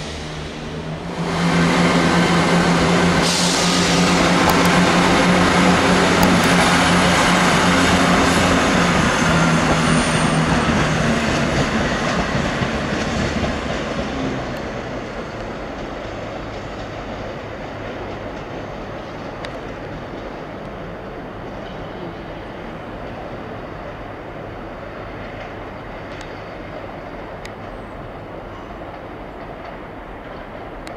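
Passenger train passing close by: a loud, steady rumble of wheels on rail with a steady hum. It rises sharply about a second in and fades after about fourteen seconds. A quieter, more distant train sound carries on after that.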